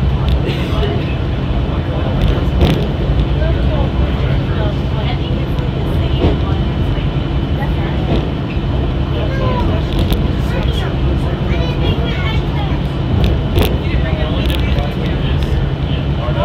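Steady low rumble of a Walt Disney World Mark VI monorail running along its beam, heard from inside the passenger cabin, with a few short clicks. People talk indistinctly in the background.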